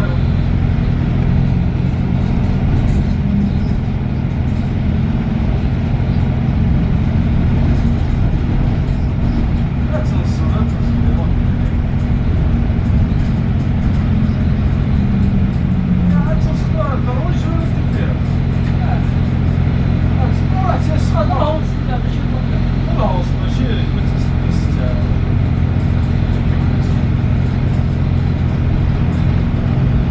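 Steady low drone of a double-decker bus's engine and running gear, heard from inside the upper deck while it drives through city traffic, with a few steady low hum tones under it.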